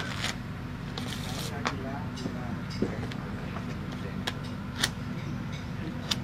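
Playing cards being handled on a wooden table, giving a few light clicks and snaps, over a steady low hum, with faint voices in the background.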